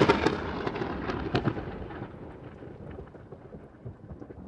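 Thunder and rain sound effect: a thunderclap's crackle and rumble, loudest at the start and fading away over the next few seconds, with a few sharp cracks and the hiss of rain.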